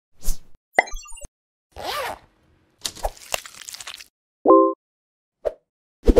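A string of short, separate intro sound effects with silence between them: quick clicks and blips, a brief noisy rush about two seconds in, a crackly run of clicks around three seconds, and a short held chord of tones about four and a half seconds in.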